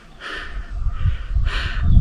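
A bird cawing twice, about a second and a quarter apart.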